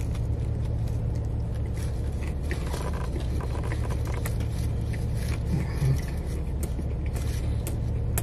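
Steady low rumble inside a car cabin, with faint wet clicks of chewing over it as a mouthful of sandwich is eaten.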